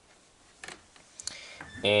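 Faint handling sounds of a paper towel being spread on a wooden bench and a carbon rod laid on it: a couple of light clicks and soft paper rustling. A drawn-out spoken 'and' starts near the end.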